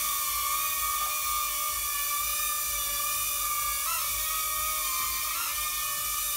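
Mini drone with caged propellers hovering, its motors giving a steady high-pitched whine. The pitch wavers briefly twice, about four seconds in and again near the end.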